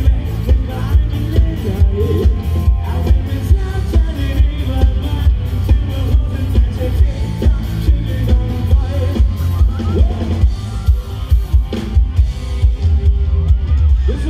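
Live rock band playing through a large PA: a drum kit keeps a steady beat under electric guitars and bass, with a singer's voice over the top and heavy bass in the mix.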